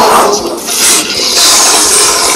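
A loud, dense jumble of many audition soundtracks playing at once, blurring into one hissy noise with no single voice standing out. It dips briefly about half a second in and again near one second.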